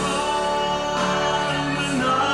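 Music: a man singing long held notes over a slow backing track.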